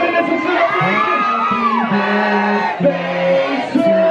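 Live performance through a PA system: a man's voice on a handheld microphone over loud music, with held pitched notes and a falling glide about two seconds in, and crowd noise underneath.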